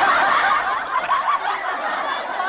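A group of people laughing together, many voices overlapping, starting abruptly and easing off slightly toward the end.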